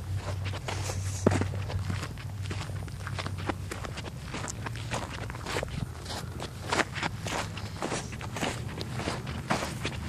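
Footsteps of a person walking, a run of many irregular sharp steps and rustles, over a low steady hum that is strongest in the first two seconds and then eases.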